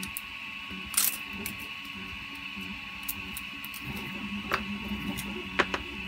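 Small 3D-printed plastic parts clicking and tapping as they are handled and set down on a cutting mat, with the sharpest click about a second in. A steady hum runs underneath.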